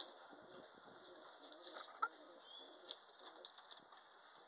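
Near silence: faint outdoor ambience with a few soft clicks and one short chirp about two seconds in.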